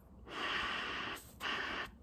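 A man blowing hard by mouth into a port of an Audi/VW engine oil cooler, air rushing through the cooler's coolant passages. There are two breathy blasts: the first about a second long, the second shorter.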